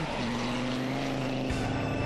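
A motor drones steadily at one constant pitch, with no rise or fall.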